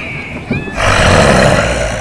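A sudden loud rushing, hissing burst about a second long, starting a little under a second in, over a steady low rumble from the stage loudspeakers.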